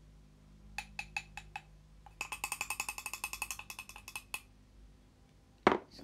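Spoon clinking against the inside of a ceramic mug while stirring: a few separate taps, then a quick run of ringing clinks lasting about two seconds. A single sharp knock near the end.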